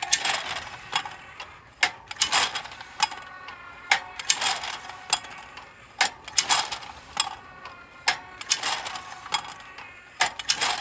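Atlas AT150 wobble clay trap throwing targets one after another, about every two seconds. Each cycle has sharp snaps and a short whirring rattle of the machine's motor and gears as it cycles the throwing arm.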